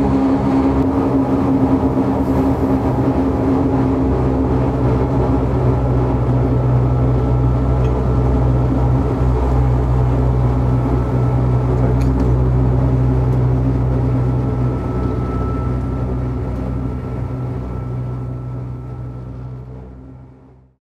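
Cab sound of the Beh 2/4 no. 72 electric rack railcar climbing steadily at 24 km/h in rack mode: its traction motors and rack drive make a steady hum with several held tones. The sound fades out over the last five seconds.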